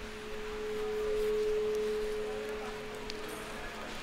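A single steady tone, swelling in the middle and fading out near the end, over a fainter, lower steady hum.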